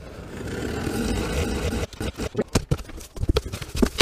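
Scissor blade slitting the packing tape along a cardboard box's seam, a continuous scraping rasp for about two seconds. It is followed by a run of sharp clicks and knocks as the cardboard flaps are pulled open.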